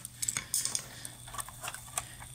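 Flathead screwdriver prying the plastic hub cap off a Hayward suction pool cleaner's wheel: a series of light clicks and scrapes of metal on plastic, with a sharper click near the end.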